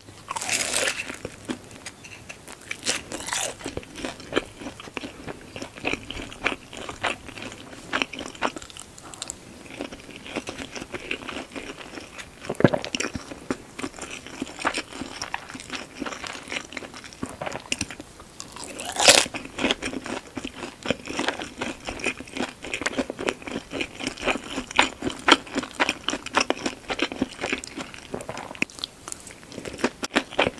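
Close-miked chewing of a deep-fried shumai (a frozen meat dumpling fried crisp): many small crisp crunches and wet chewing clicks, with a few louder crunches, the loudest about two-thirds of the way through.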